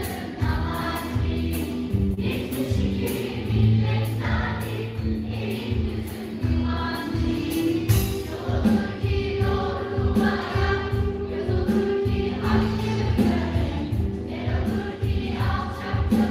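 Mixed choir singing a Turkish choral song with a live band, a steady bass line and drum beat underneath.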